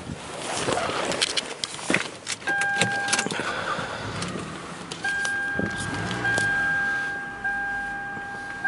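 Clicks and rustling as someone settles into the driver's seat of a 2005 Lexus RX330, then the car's steady electronic warning chime. The chime sounds briefly about two and a half seconds in, then comes back at about five seconds and keeps going.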